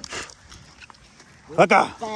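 A short, loud vocal call with a rising pitch near the end, after a brief rustle at the start.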